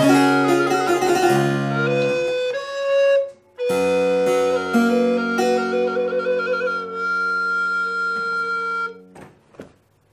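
Harpsichord and alto recorder playing a baroque duet. After a brief break, they close on long held final notes with the recorder trilling, and the music stops about nine seconds in.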